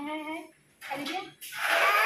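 A toddler's voice: short vocal sounds, then a loud, breathy, high-pitched shout in the second half.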